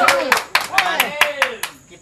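A small group clapping in a quick, even rhythm of about five claps a second, with voices cheering over it. The claps and voices die away near the end.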